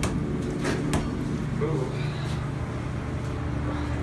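A steady low mechanical hum with a faint steady tone in it, inside an elevator cab, with two light knocks in the first second.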